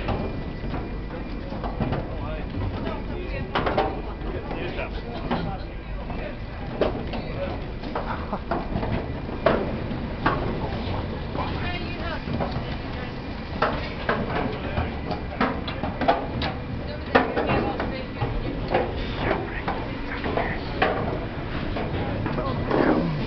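Indistinct voices over a steady low rumble, with scattered short knocks and clicks.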